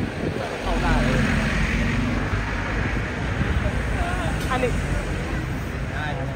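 Crowd of tourists chattering indistinctly in many voices, over a low rumble of road traffic; a steady low engine hum from a passing vehicle runs through the first couple of seconds.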